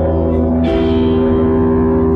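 Live rock band music: reverb-soaked electric guitar chords ringing out over a steady low bass drone, with a new chord struck about two-thirds of a second in and left to sustain.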